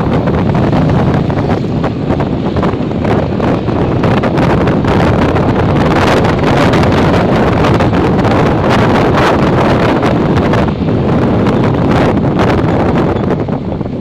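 Wind rushing over the microphone of a camera held up on a moving motorcycle: a loud, ragged, gusting rush, with the motorcycle's running noise mixed in beneath.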